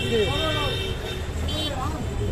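Busy street ambience: a steady traffic rumble under raised voices, with a high steady tone in the first second.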